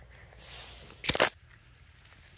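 A short crunching splash about a second in, as a small glass jar is pushed through icy slush into the frozen pond's water to scoop a sample.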